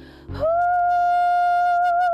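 A woman singing: after a short breath near the start, she holds one long, steady note that wavers slightly near the end.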